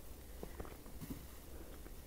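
Quiet outdoor ambience: a faint steady low rumble with a few soft ticks about half a second and a second in.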